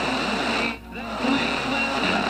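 Instrumental backing music played from a DJ's turntables and mixer, with no vocal over it; it dips briefly a little under a second in, then comes straight back.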